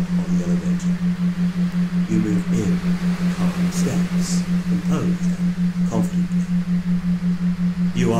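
A steady low electronic tone pulsing evenly about six times a second, the kind of rhythmic background tone laid under hypnosis recordings. Faint murmured voice-like sounds surface now and then beneath it.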